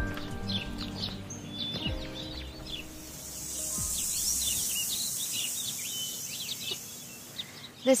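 Outdoor garden ambience of small birds chirping and twittering, with a high hiss that swells in the middle. Background music trails off during the first couple of seconds.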